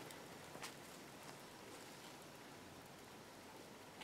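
Near silence: faint room hiss, with one faint tick a little over half a second in.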